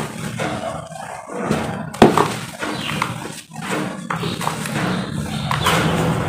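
Dry cement powder and lumps being crumbled, squeezed and poured by hand in a basin: a continuous gritty crunching and hissing pour, with a sharp knock about two seconds in.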